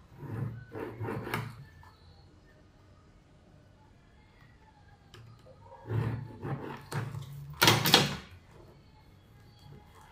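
Scraping and rustling of paper and a plastic set square on a table while pencil lines are drawn, in two bursts: a short one about half a second to a second and a half in, and a longer, louder one from about six to eight seconds in.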